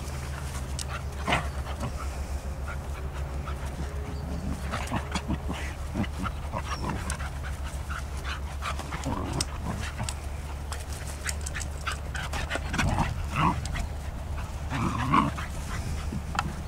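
Two English Cocker Spaniels playing together: scuffling and short dog vocalisations, the loudest a few close together near the end, over a steady low rumble.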